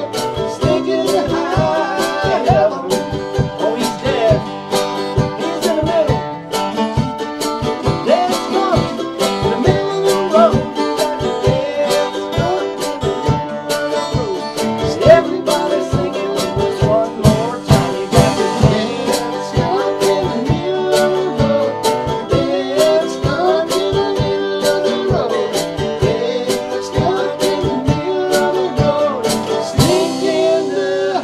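Mandolin and acoustic guitar playing an upbeat country-bluegrass accompaniment in a steady strummed rhythm, with a wavering vocal melody line over it.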